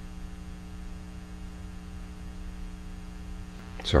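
Steady electrical mains hum in the recording's background: a few fixed low tones over a faint low rumble. A man's voice starts just at the end.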